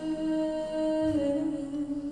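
A woman's voice holding a long sung note, hummed or on a soft vowel, over her acoustic guitar. The pitch steps down slightly about a second in.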